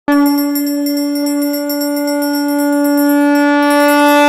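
Conch shell (shankh) blown in one long, steady note that starts abruptly and is held throughout, the traditional call that opens an aarti. Behind it a small bell rings rapidly and fades out about three seconds in.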